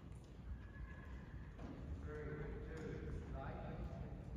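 A person's voice calling out in drawn-out, wavering tones from about halfway through, over a steady low rumble.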